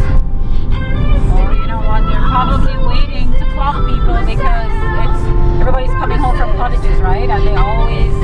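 A song with vocals playing from a car radio, over the steady low road and engine rumble inside a moving car's cabin at highway speed.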